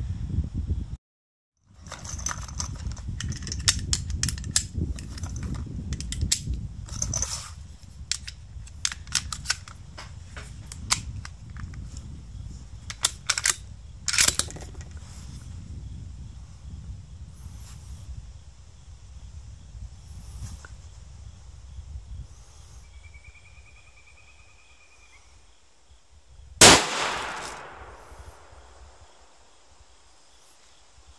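A single rifle shot from an ATA ALR bolt-action rifle in .308, a sharp crack with about two seconds of ringing echo, well after halfway. Before it, a low rumble with a run of sharp clicks and cracks.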